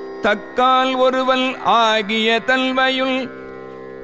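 A voice singing a devotional melody in Carnatic style over a steady drone, holding long notes and sliding between them with ornamental glides. The voice stops shortly before the end, leaving the drone.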